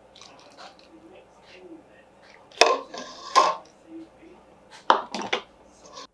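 A metal ladle scooping boiling water from a stainless steel pot, clanking against the pot, and pouring it through a canning funnel into a jar of raw-packed green beans. The loudest clatter comes in two spells, about two and a half and five seconds in.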